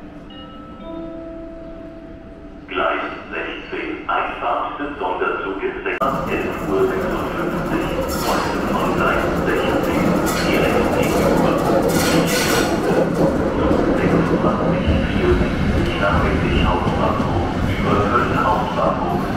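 Locomotive-hauled passenger train arriving along the platform: from about six seconds in, the loud rolling and clatter of its wheels and coaches passing close by, with sharp metallic squeals and knocks. Before it arrives, a voice, likely a station announcement, is heard briefly.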